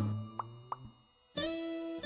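Two quick rising pop sound effects, then a moment of complete silence before a steady held note of show background music comes in about one and a half seconds in.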